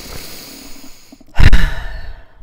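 A woman breathes in, then sighs loudly about one and a half seconds in, her breath hitting the microphone.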